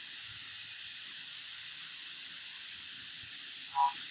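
Steady faint hiss of the recording's background noise. Near the end come a brief two-note tone and a quick pair of mouse-button clicks.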